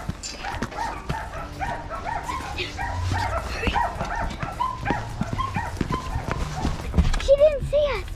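Dogs barking in a rapid, steady run of about three barks a second, over scattered knocks and thuds.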